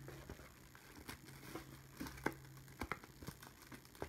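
Faint crinkling and scattered small clicks of a plastic sticker-sheet sleeve being handled as someone tries to get it open.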